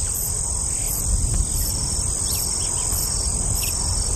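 Insect chorus: a steady high-pitched buzz with a higher pulsing chirp repeating about twice a second, over a low rumble.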